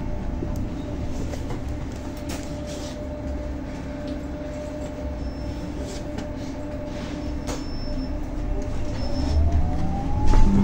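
Inside a 2023 Zhongtong N12 battery-electric city bus under way: low road and body rumble with the electric drive motor's steady whine. Near the end the whine rises in pitch and the noise grows louder as the bus speeds up, with a few light rattles along the way.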